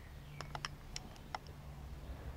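A few faint, sharp clicks at irregular intervals over a low steady hum; no shot is fired.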